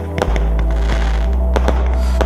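Fireworks going off, a few sharp bangs, one just after the start and more near the end, under background music with a sustained deep bass note.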